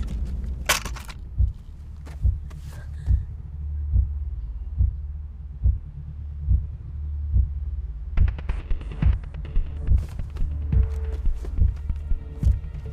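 Tense film score: a low steady drone with a heartbeat-like pulse at a little over one beat a second, growing busier and quicker after about eight seconds. A single sharp crack comes just under a second in.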